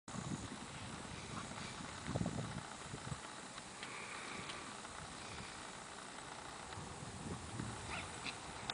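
Galiceno horses galloping and trotting on grass pasture: faint hoofbeats, with a few louder dull thuds scattered through.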